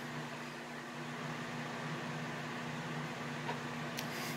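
A steady low mechanical hum of room background noise, like a running fan or air conditioner. A faint click comes near the end.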